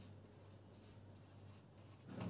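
Faint scratching of a marker writing on a whiteboard, barely above room tone.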